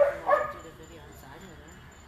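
Young border collie giving two short, high whining yips in quick succession right at the start.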